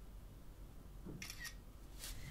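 iPhone 4 camera shutter sound, faint: a quick double click about a second in as a photo is taken.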